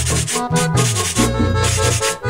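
Instrumental break of a vallenato-style song: button accordion playing a melody over bass, with the steady rasping strokes of a scraper keeping the rhythm.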